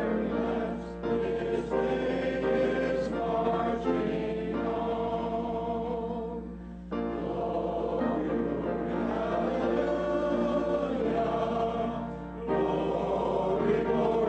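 A congregation singing a hymn together, in sung phrases with short breaks near the middle and about twelve seconds in.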